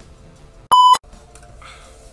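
A single short electronic beep about a second in: one steady high tone, loud and lasting about a third of a second, with faint room tone around it.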